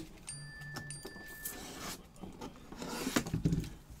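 A gloved hand rubbing and knocking lightly against stacked aluminium card briefcases, with a cluster of scrapes and clicks about three seconds in.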